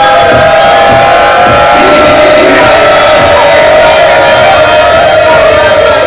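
Loud live hip-hop music ending on one long held note, with the crowd cheering over it.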